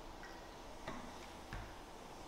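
Faint clicks and a soft knock from a plastic water bottle being handled and set down after a drink, over quiet room tone.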